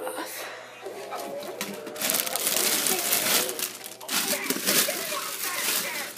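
Plastic packaging wrap crinkling and rustling as a new sewing machine is unwrapped from its box, in two loud bouts, the first starting about two seconds in and the second about four seconds in, with voices underneath.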